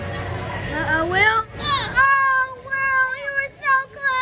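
A child's high voice: a rising cry about a second in, then long drawn-out cries held on a few steady pitches, falling away at the end, over the hubbub of a busy indoor hall.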